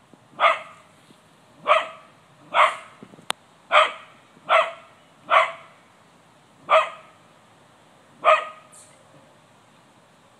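Cocker spaniel barking in single barks, about eight of them roughly a second apart, stopping near the end. A sharp click sounds once, about three seconds in.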